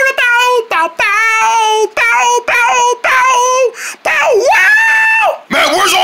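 A high-pitched voice vocally imitating an electric-guitar riff: a run of short sung notes and longer held tones that slide up and down. Near the end it breaks into fast speech.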